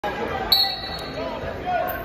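Thumps of wrestlers on a gym wrestling mat, a sharp one about half a second in followed by a brief high squeak or ring, with a softer knock about a second in. Spectators' voices carry under it in the echoing gym.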